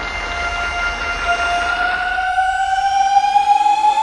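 A single synthesizer tone with overtones gliding slowly and steadily upward in pitch: a build-up riser in an electronic dance track.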